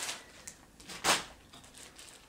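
Handling of a craft kit and its plastic project bag: a faint click, then one short, sharp rustle about a second in.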